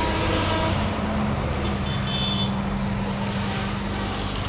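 Road traffic going by on a highway: a vehicle horn ends under a second in, then a steady engine hum and tyre noise from passing cars and motorbikes.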